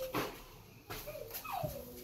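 Short high-pitched whimpering cries, one sliding down in pitch a little past the middle.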